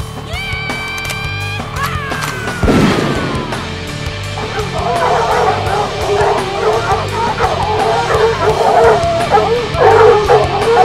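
Intro music with a long falling tone about two to three seconds in, then, from about halfway, a pack of beagles baying over the music, growing louder toward the end.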